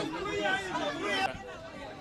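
Speech only: people talking amid crowd chatter.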